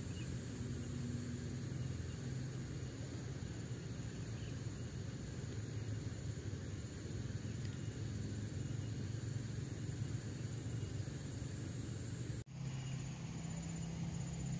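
Steady outdoor ambience by still water: a constant low hum with faint, high insect chirring over it. It drops out for an instant near the end.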